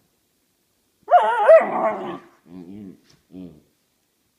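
Airedale Terrier puppy vocalising in a Chewbacca-like way, a grumbling protest at being kept from sleep. About a second in she gives one loud, wavering, warbling cry lasting about a second, then two shorter, lower grumbles.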